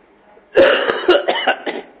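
A man coughing hard several times in quick succession, a fit lasting just over a second.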